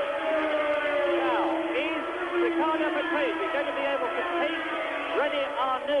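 Formula One racing cars' engines running at high revs on track, holding steady notes with short pitch sweeps up and down as the cars pass.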